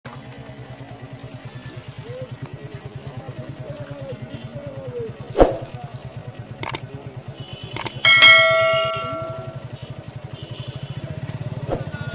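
A bright bell-like ding rings out and fades over about a second and a half, just after a few sharp clicks; this matches the click-and-bell sound effect of an on-screen subscribe animation. A steady low pulsing hum runs underneath throughout.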